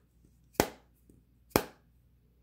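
Rigid rolled-cardboard tube tapping against a revolver's grip panels twice, about a second apart: light glancing blows that loosen the tight-fitting grips so they start to come apart.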